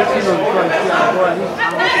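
Several people's voices talking and calling out over one another in a large hall, with one voice rising briefly near the end.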